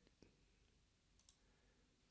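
Near silence broken by two faint computer mouse clicks.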